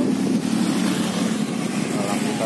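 Motor scooters passing close by on the road, their engines running with a steady hum.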